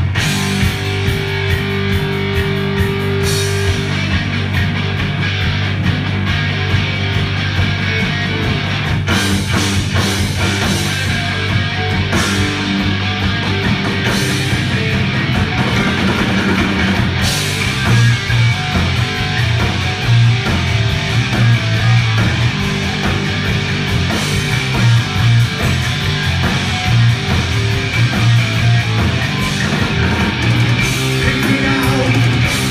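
Three-piece heavy metal band playing live, loud and continuous: distorted electric guitar, bass guitar and drum kit.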